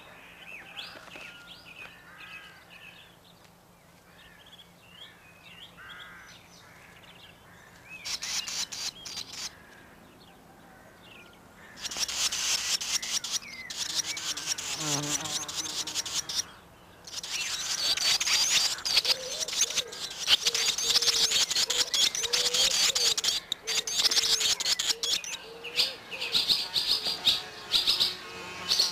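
Barn swallow nestlings begging for food at the nest: faint chirping at first, a short burst of calling about eight seconds in, then loud, shrill, rapid calling from about twelve seconds in, when a parent arrives with food, keeping up with short breaks to the end.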